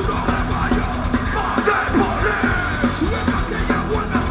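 Live rock band playing loud: electric guitar and drums under a vocalist shouting into the microphone.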